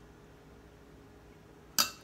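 A single sharp clink of a metal scoop against a glass dish near the end, ringing briefly, over quiet room tone.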